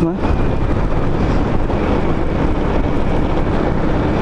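Wind rushing steadily over the microphone of a camera on a moving Honda Biz scooter, with the small single-cylinder engine and tyre noise running underneath.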